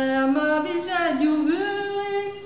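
A woman singing an unaccompanied Breton kan a boz (listening song). She holds long notes in a slow melody, gliding up and down between pitches.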